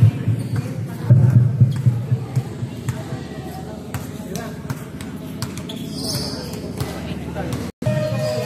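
Players and onlookers talking, with a basketball bouncing now and then on a concrete court. The sound drops out briefly near the end.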